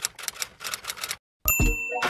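Typewriter sound effect: a quick run of key clicks, then a bell ding about one and a half seconds in.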